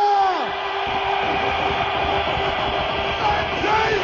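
A long held note with even overtones slides down in pitch and dies away about half a second in. Another like it swoops up near the end and holds. Both sit over a steady, loud wash of crowd noise and tape hiss.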